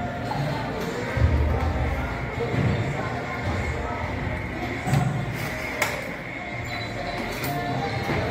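Background music and people's voices echoing through a large indoor hall, with a few knocks.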